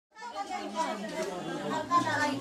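Several voices chattering at once, fading in from silence just after the start.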